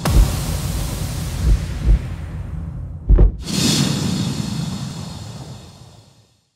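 Cinematic logo-intro sound effects: a deep impact at the start and a few low booms, then a quick rising swoosh into a second hit about three seconds in, followed by a whooshing swell that fades out near the end.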